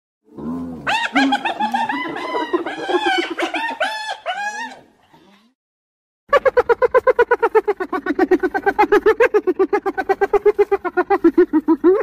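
Hyena calls. It opens with a low rising whoop, then a run of high, wavering cries rising and falling in pitch for about four seconds. After a short pause comes a fast pulsed laughing giggle at about seven notes a second.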